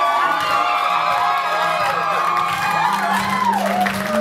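Dance music playing loudly while a crowd of guests cheers and whoops over it.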